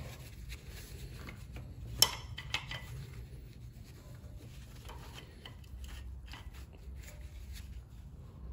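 11 mm open-end spanner clinking against a brake caliper's bleeder screw as it is fitted and turned to crack the bleeder open: one sharp metallic click about two seconds in and a smaller one about half a second later, amid quiet handling rustle.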